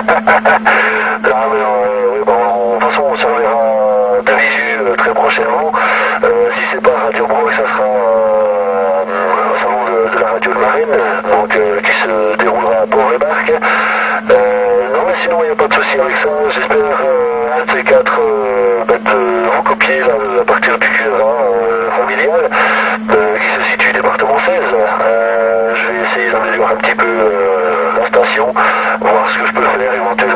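A voice talking continuously over a CB radio receiver, too unclear to make out the words, with a steady low hum running under it.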